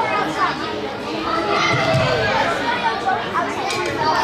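Many children's voices shouting and calling over one another during play, echoing in a large indoor hall.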